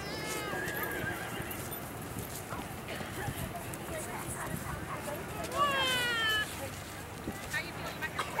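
A horse whinnying twice: a short wavering call right at the start and a louder call falling in pitch about five and a half seconds in. Faint hoofbeats of a horse cantering on a sand arena run underneath.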